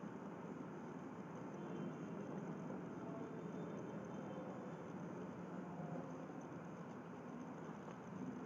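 Steady background hiss of room tone, with no distinct sound events.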